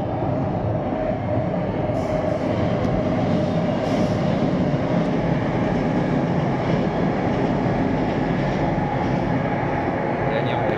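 Manila LRT Line 1 light-rail train running along its elevated track, heard from high above as a steady, even noise with a faint hum, blended with the city's general traffic sound.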